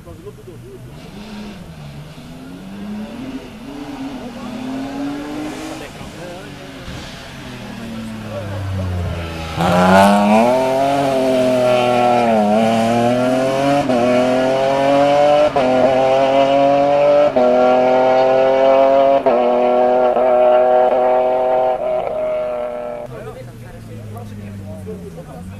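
Rally car's engine approaching, then passing loud about ten seconds in and accelerating away hard through several upshifts. The pitch climbs between brief drops at each gear change. It fades near the end.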